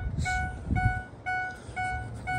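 A Ford F-350's warning chime beeping steadily at about two beeps a second, with a low rumble of handling noise about halfway.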